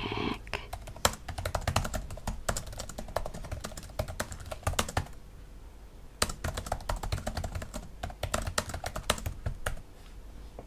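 Typing on a laptop keyboard: a quick run of key clicks that stops for about a second halfway through, then resumes until just before the end.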